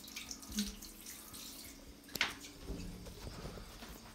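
Water from a handheld shower sprayer running and dripping onto a tiled shower floor, with a sharp knock a little after two seconds in.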